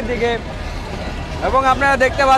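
A commentator's voice speaking in two short bursts, near the start and again from about one and a half seconds in, over a steady low background rumble.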